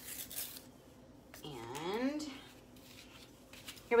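A woman's single drawn-out hum in the middle, with a short rustle at the start and a few faint clicks of handling. Speech begins at the very end.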